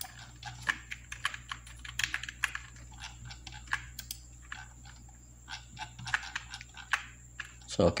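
Computer keyboard being tapped: irregular, quick key clicks, several a second, over a faint steady hum.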